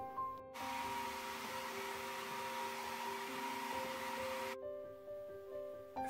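Hair dryer switched on about half a second in, blowing steadily for about four seconds to dry a wet watercolor wash, then switched off. Quiet background music with held notes runs underneath.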